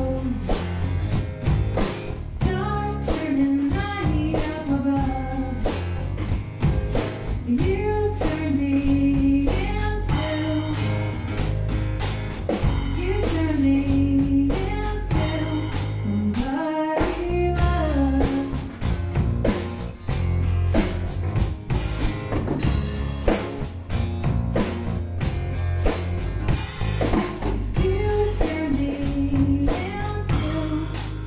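A band playing: a woman singing lead over acoustic guitar and a drum kit.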